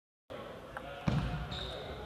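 Sound cuts in about a third of a second in: table tennis play, with sharp clicks of the ball on bat and table and a louder knock about a second in. Voices talk in the background.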